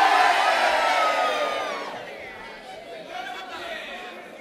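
Crowd cheering and shouting as a charanga brass band finishes its piece. A single held shout rings out about a second in, and the noise fades away over the last two seconds.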